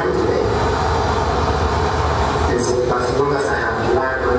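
Sound of a video playing through a hall's loudspeakers: indistinct, echoing speech over a steady low rumble.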